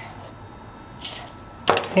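Faint sounds of a chef's knife slicing through a thick raw steak on a wooden cutting board, with a soft scrape about a second in.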